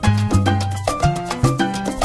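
Salsa band playing an instrumental passage with no vocals: a stepping bass line under held melodic notes, with percussion striking a steady rhythm.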